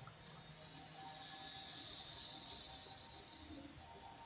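Precision gyroscope rotor spinning freely at high speed, about 12,000 rpm, after its spin-up motor has been removed: a faint, steady, high-pitched whine.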